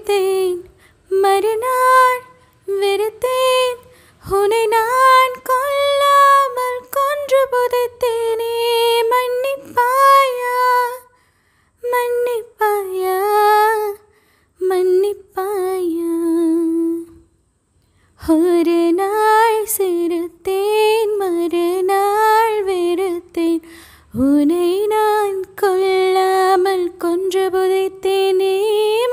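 A woman singing a melody unaccompanied into a close-held microphone, in held, gliding phrases with short breaks between them.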